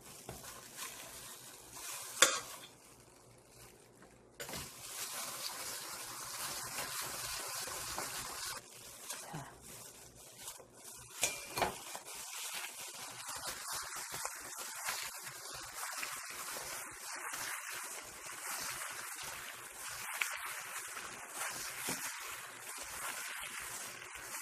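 A spoon clinks sharply once against a stainless steel mixing bowl. From about four seconds in comes the steady, fluctuating noise of a plastic-gloved hand mixing wet, salted overripe cucumber slices into thick chili-paste seasoning, with another small clink near the middle.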